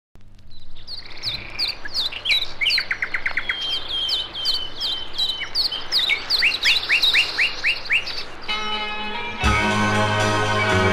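Songbird song: a busy run of quick chirps, falling whistled notes and rapid trills. Near the end the pop band's music fades in underneath and swells up.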